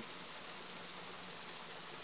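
A steady, even hiss of background noise during a pause in speech, with no distinct events.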